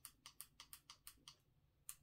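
Faint quick clicks from the small buttons of a light being adjusted, about seven a second for just over a second, then one more click near the end.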